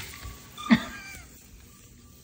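A spider monkey gives one short, sharp squeal about a second in, which trails off in a few falling tones.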